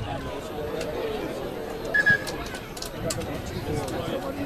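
Chatter from players' and spectators' voices at a rugby ground. About two seconds in, the referee's whistle gives a brief, high blast in two quick pulses, the loudest sound.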